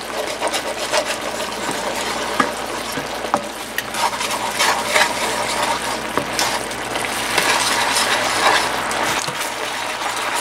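A wooden spatula stirring and scraping through bubbling soy glaze and chicken breasts in a nonstick skillet, with frequent light clicks of the spatula against the pan over the steady bubbling of the simmering sauce.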